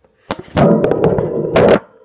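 Handling noise as the camera is set down: a few light clicks, then loud rubbing and knocking on the microphone for about a second, which stops abruptly.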